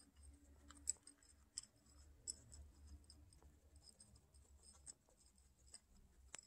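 Two guinea pigs crunching dry pellets and oat grains: faint, irregular crisp clicks of chewing, over a low steady hum.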